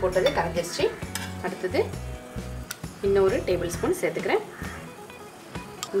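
A metal spoon stirring a liquid glaze in a glass bowl, clinking and scraping against the glass several times.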